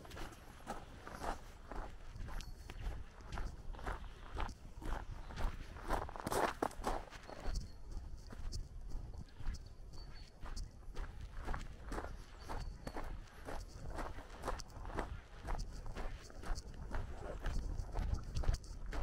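Footsteps of a person walking on a gravel road at a steady pace, about two steps a second. A brief louder sound comes about six seconds in.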